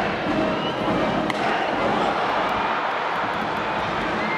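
Ballpark crowd noise from packed stands, with one sharp crack about a second in as an aluminium bat meets the pitch and sends a fly ball to the outfield.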